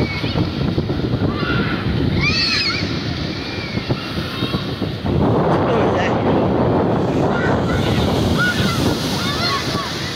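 Ocean surf breaking and washing up the beach, with wind rumbling on the microphone; the wash swells louder about halfway through. Children's high shouts rise over it now and then.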